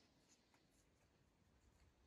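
Near silence: faint outdoor background with a few soft high ticks.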